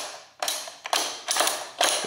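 Weight-selector dial of a BWSS adjustable dumbbell being turned by hand, clicking about twice a second as it detents into each weight setting; each click marks the dial landing on a weight.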